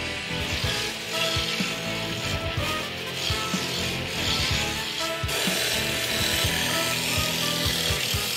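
Wood lathe spinning a billiard-cue blank while a hand-held turning chisel shaves it, a steady scraping cut as chips fly off, turning the shaft down to its taper.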